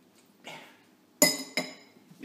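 A small metal kitchen spatula set down on the counter with two sharp clinks about half a second apart, the first louder, each ringing briefly, after a soft scrape.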